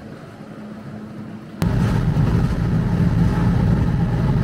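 Steady engine and road noise heard inside a moving car's cabin. It starts abruptly about one and a half seconds in, after a quieter steady hum.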